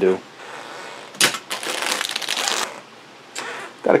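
Thin clear plastic bag crinkling and rustling as bagged plastic model-kit runners are handled and swapped, a dense crackle lasting about a second and a half near the middle, with a softer rustle near the end.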